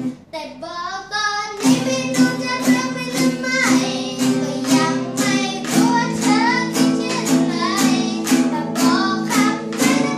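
A boy singing while strumming a small acoustic guitar. He sings the first phrase almost unaccompanied, then the strumming comes back in a steady rhythm of about two strums a second.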